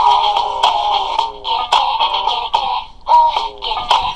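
Music with a singing voice, the melody moving in short phrases.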